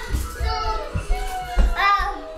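A toddler's high-pitched voice calling out in gliding, wordless sounds while playing.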